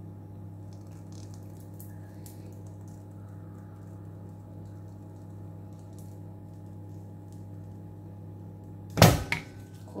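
Steady low hum, then a sharp, loud clack about nine seconds in with a smaller knock just after, as the metal frame of a multi-wire soap loaf cutter knocks against its base after the cut.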